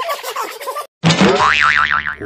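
Cartoon comedy sound effects. A fast, bouncy comic music cue cuts off just under a second in. Then comes a loud 'boing' spring effect with a wobbling, warbling pitch.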